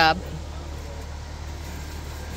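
A woman's voice finishes a word at the start, then a steady low outdoor rumble with no distinct strokes in it.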